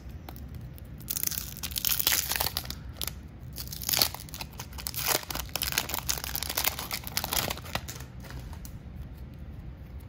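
Waxed-paper wrapper of a 1993 Topps baseball card wax pack being torn open and crinkled by hand: a run of tearing and crinkling from about a second in until near the end, loudest around two and four seconds in.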